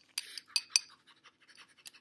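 Makeup brushes and small makeup items being handled and picked through: a few light clicks and clinks with a brief scrape in the first second, then fainter ticks.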